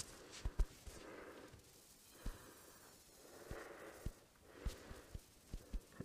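Scattered computer mouse clicks, a handful of short sharp ones spread through the pause, with soft breathing close to the microphone.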